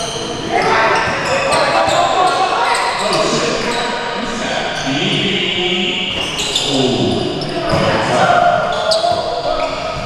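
Basketball game on a hardwood gym floor: the ball bouncing and players' voices shouting, echoing around a large hall.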